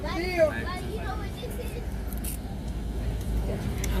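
Steady low rumble of a moving bus heard from inside its cabin, loud enough to compete with talk; a voice speaks briefly near the start.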